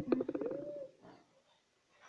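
A sharp knock, then a short cooing sound lasting under a second, its pitch rising and falling.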